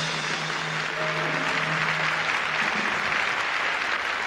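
Audience applauding, with a held low note from the musical accompaniment sounding under it until it fades out a little after two seconds in.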